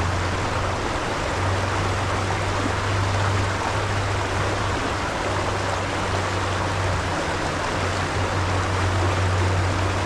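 Shallow rocky creek flowing, a steady rushing of water over stones. A low hum runs underneath and drops out briefly now and then.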